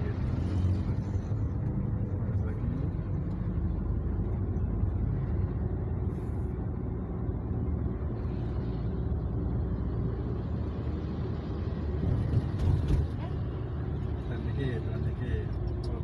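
Steady low engine and road rumble inside a manual Daihatsu car's cabin as it drives along a street, with a few brief knocks about twelve seconds in.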